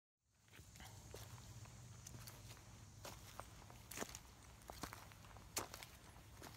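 Faint footsteps on a trail of dry fallen leaves and small stones, with leaf-crackle clicks about once a second, over a low steady rumble.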